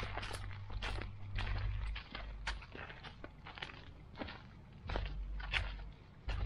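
Footsteps on a grit path: an irregular patter of short, crisp steps, a few a second, over an on-and-off low rumble.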